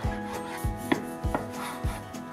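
Chef's knife cutting through soft rolled cinnamon-roll dough and knocking on a wooden cutting board, with one sharper knock about a second in. Background music with a steady beat.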